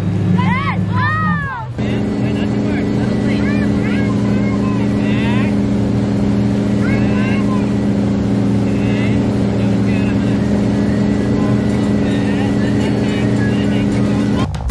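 Wake boat's inboard engine running under tow, with voices over it in the first couple of seconds. After a sudden change just under two seconds in, it holds a steady, even note at towing speed, with the rush of the boat's wake.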